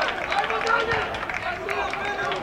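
Several men's voices shouting and calling over each other at a football match just after a goal, with no single clear speaker.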